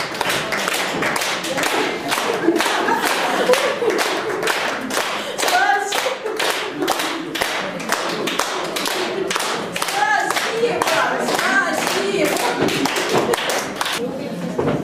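Audience applauding with dense, irregular clapping throughout, and short bursts of voices a few times over the applause.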